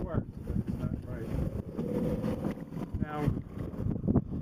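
Wind buffeting the microphone, a steady low rumble, with brief bits of speech in between.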